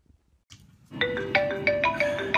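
A mobile phone ringing with a marimba ringtone: a quick tune of short struck notes that starts about a second in.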